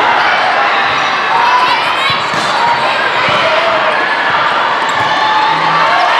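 Echoing din of a volleyball tournament hall: balls being hit and bouncing on the courts, with voices calling out over a steady crowd hum.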